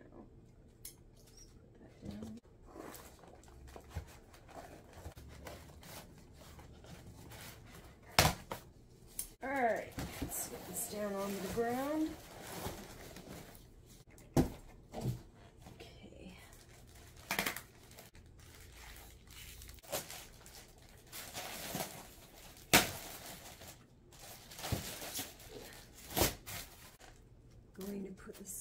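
Cardboard box and styrofoam packing being handled and pulled apart: scattered knocks, scrapes and rustles, with two sharp knocks, about eight seconds in and about two-thirds of the way through.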